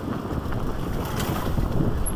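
Wind buffeting the microphone of a bike-mounted camera, over the uneven rumble and rattle of a mountain bike rolling along a rough dirt singletrack.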